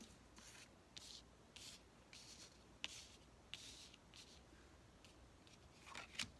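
Faint, short swishes and a couple of light ticks as tarot cards are slid off the deck and laid down one after another on a cloth-covered table.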